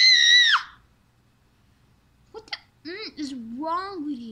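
A child's voice lets out a loud, high-pitched squeal lasting about a second. After a short pause come a few short, sliding vocal noises.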